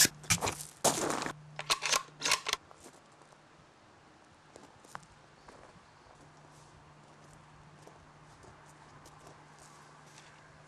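A sudden loud crack, then about two and a half seconds of rough scuffling and crunching, after which only a faint steady hum remains.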